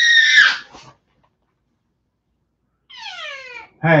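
A child's shrill, sustained scream that breaks off about half a second in, followed near the end by a shorter whining cry falling in pitch.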